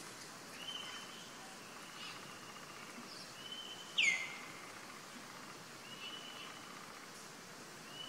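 High whistled animal calls repeated about every two seconds, each a held note that drops in pitch at its end. The loudest, about halfway through, falls sharply.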